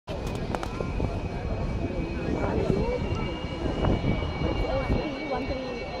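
Jet aircraft engine rumbling with a steady high whine, mixed with the chatter of nearby spectators' voices; the rumble eases off near the end.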